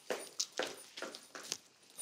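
A series of short, irregular taps or knocks, roughly three a second.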